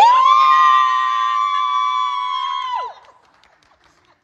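A high-pitched joyful cry from the guests, held on one note for almost three seconds, sliding up at the start and dropping away at the end, in cheering at the bride's "oui".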